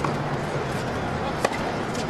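Two sharp pops of a tennis ball being hit in a practice rally on a hard court, one at the start and a louder one about a second and a half later.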